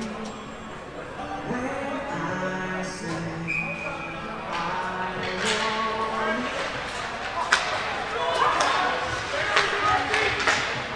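Arena music with held notes over crowd chatter in the first half. Then ice hockey play resumes: skates scraping the ice and sticks clacking on the puck, with a sharp crack about halfway through the second half.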